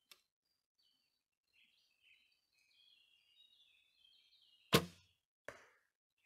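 Traditional recurve bow shot: a sharp snap of the string on release about three-quarters of the way in, then a fainter thud under a second later as the arrow strikes the foam 3D target for a hit. Faint birdsong before the shot.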